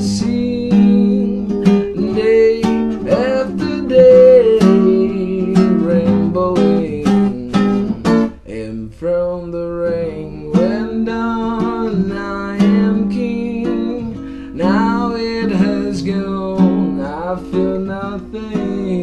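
Acoustic guitar strummed in a steady rhythm, accompanying a man singing a slow song.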